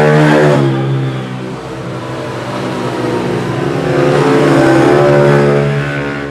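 A car engine revved hard by a hoon driving along the street, accelerating loudly at the start and again about four seconds in.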